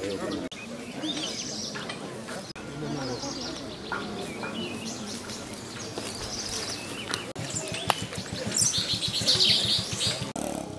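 Birds chirping over a low murmur of a crowd's voices, the chirps densest near the end.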